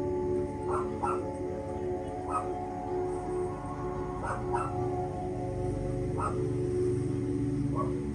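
Calm ambient music of steady held tones, with a dog yipping in short, sharp calls about seven times over it, some of them in quick pairs.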